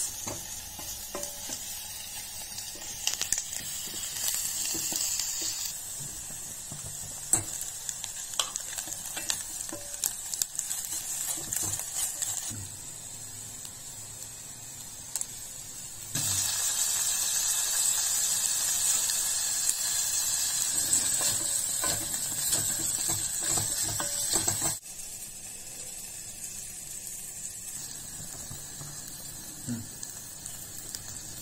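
Oil sizzling as sliced onions fry in a stainless-steel pressure cooker, with a wooden spatula scraping and clicking against the pan. About halfway through, when green chilies go in, the sizzle gets much louder for several seconds, then drops suddenly.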